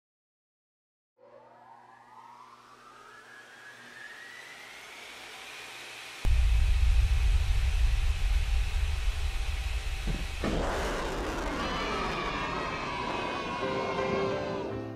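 Produced intro sound effects: a rising electronic sweep that swells for about five seconds, then a sudden loud deep boom that holds as a low rumble, and a second whoosh with falling tones near the end.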